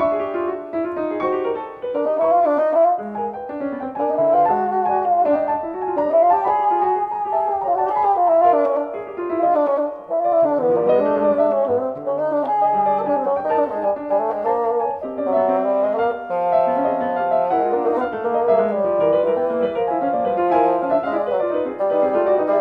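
Bassoon and piano playing a classical chamber duet: a fast, unbroken stream of busy notes, with longer held low notes underneath at times.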